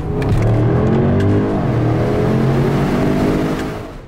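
Range Rover Sport's supercharged V8 accelerating, heard from inside the cabin: the engine note climbs, drops with a gear change about one and a half seconds in, climbs again, then fades out near the end.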